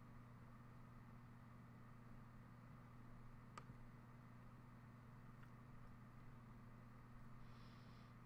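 Near silence: room tone with a steady low hum and two faint clicks midway through.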